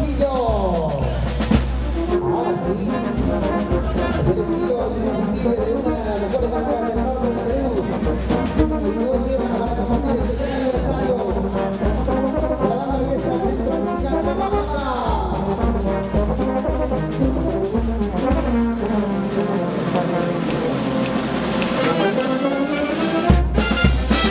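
Peruvian brass band playing a huayno, with trumpets, trombones, saxophones and sousaphones over bass drum, drum kit and cymbals. The horns play sliding runs, falling at the start and rising then falling in the middle. Near the end the deep bass drops out for a few seconds, and then the full band comes back in with heavy drum hits.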